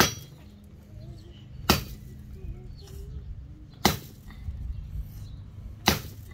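Pelu (Samoan machete) striking the trunk of a small dry tree: four sharp knocks about two seconds apart. The blade is hitting with its back rather than its edge.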